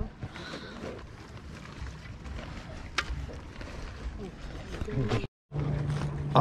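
Wind rumbling on the microphone over open-air lakeside ambience, with faint voices in the background and a single sharp click about three seconds in. The sound drops out completely for a moment near the end.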